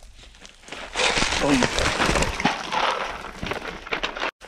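A person sliding down a steep dirt-and-gravel creek bank: scraping and crunching of loose gravel, soil and dry twigs, starting about a second in and continuing to the end, with a brief vocal grunt early in the slide.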